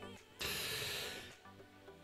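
A man's breath close to the microphone, a noisy rush about a second long, over faint background music.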